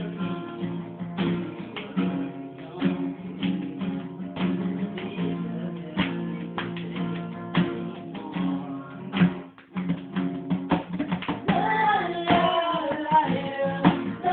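Acoustic guitar strumming chords in a steady rhythm, with hand-drum taps on the beat. Voices start singing near the end.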